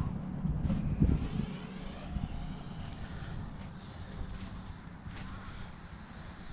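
MJX Bugs 3 brushless quadcopter's propellers humming steadily, with a faint higher whine that shifts in pitch in the middle, over low wind rumble and thumps on the microphone that are strongest in the first second or so.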